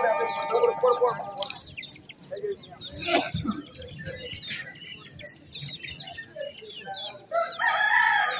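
Chickens clucking with short scattered calls, and a rooster crowing near the end, over small birds chirping.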